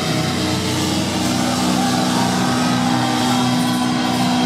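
Live heavy metal band's distorted electric guitars holding one long, steady chord, loud.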